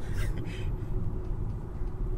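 Steady low rumble of a 2015 Hyundai Sonata driving, its engine and road noise heard from inside the cabin.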